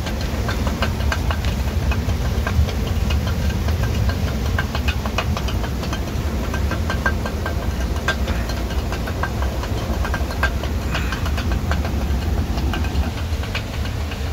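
Water-powered stone grinding mill running: the upper millstone turns with a steady low rumble, over which comes a constant irregular patter of light clicks and taps from the grain feed.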